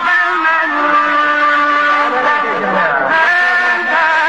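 A man's voice chanting Quran recitation in Arabic in the melodic style, drawing out long held notes that waver in pitch, with a short break about three seconds in before the next held phrase.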